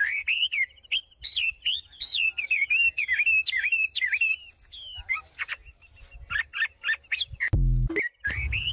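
Birds chirping. A rapid series of short rising-and-falling chirps runs for about five seconds, then gives way to sparser, sharper single chirps.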